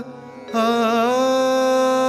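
A man singing in Indian classical style over a tanpura drone: after a short break at the start, about half a second in his voice comes back with a quick wavering ornament, then settles into a long held note.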